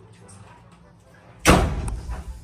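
Faint rustling, then a sudden loud bang about one and a half seconds in that dies away over half a second.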